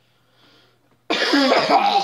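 A person coughing: one loud, rough cough about a second in, after near quiet.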